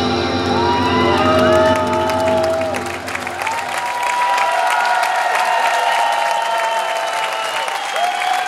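A live band's final chord rings out and dies away over the first three seconds as an audience breaks into applause and cheering. Long sliding whistle-like tones run above the clapping.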